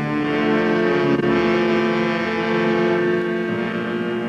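Orchestral music bridge of held string chords, the chord shifting about three and a half seconds in.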